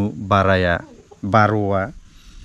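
A man speaking in two short phrases, with a pause of about half a second between them.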